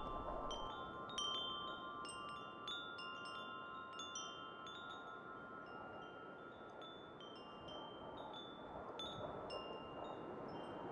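Tubular wind chime ringing softly in a breeze: scattered light strikes of its tubes, several a second at first and thinning out after a few seconds, over a faint hush of wind.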